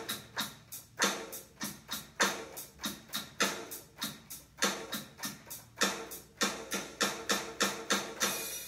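Electronic drum sounds from a tiny keyboard played through small computer speakers: a steady pattern of layered drum hits, some low and some bright, about four a second, performing a rhythm exercise.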